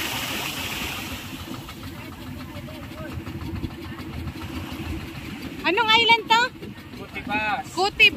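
Small waves washing onto a sandy beach, the wash fading about a second in, over a steady low rumble. A high-pitched voice calls out twice near the end.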